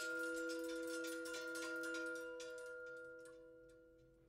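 Electronic music: a dense flurry of rapid clicks and ticks over several held pitched tones. The clicks thin out and the sound fades away in the last second or two.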